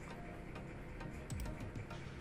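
A few faint computer mouse clicks, in small clusters, while windows are being switched on a PC.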